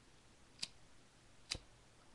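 A disposable butane lighter being clicked to light it: two sharp clicks about a second apart, the second louder. The lighter catches with a large flame because its flame-adjustment setting has been turned up.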